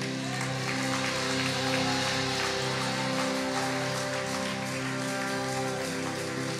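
Worship band playing an instrumental passage: steady held chords with electric guitar and no singing.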